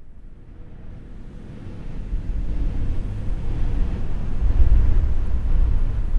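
A low rushing rumble of outdoor ambience, with no music or tones in it, fading in from silence and growing steadily louder.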